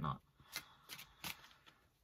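Tarot cards being shuffled and handled, giving about four soft card snaps roughly a third of a second apart.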